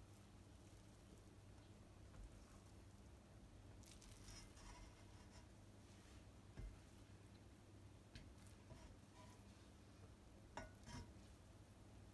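Near silence: a silicone spatula folding cooked basmati rice in an enamelled pot, giving a few faint soft scrapes and ticks, over a steady low hum.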